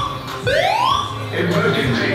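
Building fire alarm sounding the repeating rising 'whoop' evacuation tone, one upward sweep about every second: the signal to evacuate the building. A low steady hum comes in about halfway through.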